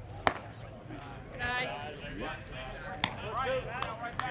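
One sharp crack of a baseball at home plate about a third of a second in, with a fainter click about three seconds in, amid players and spectators calling out.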